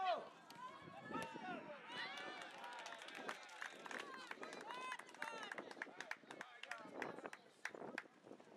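Children's voices calling out and shouting across a football pitch during play, with scattered short clicks and thuds of running feet.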